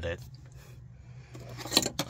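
A flathead screwdriver clicks sharply against the metal locking ring of the fuel pump module, once or twice near the end, while the ring is being worked loose.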